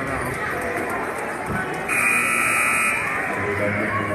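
Basketball scoreboard buzzer sounding once, a steady tone lasting about a second, over crowd chatter in the gym.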